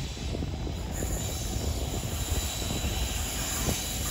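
A GBRf Class 66 diesel locomotive, with an EMD two-stroke V12 engine, approaches at the head of an intermodal container train, making a steady low rumble. A thin, steady high hiss joins about a second in.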